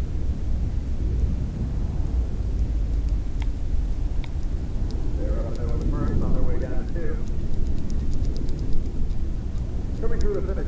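Steady low rumble of outdoor background noise, with faint talking about halfway through and a few light clicks.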